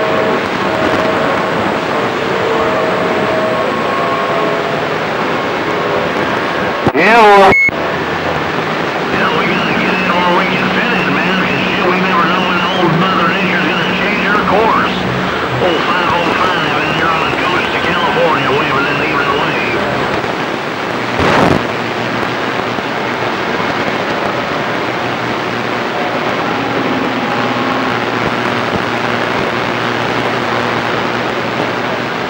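CB radio receiver hissing with band static, weak garbled voices coming and going in the noise. A brief, loud falling whistle cuts through about seven seconds in, and a short burst of noise sounds near twenty-one seconds.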